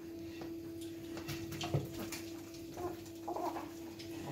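Soft clicks and knocks as the Thermomix's stainless-steel mixing bowl is lifted off its base and handled, over a steady hum.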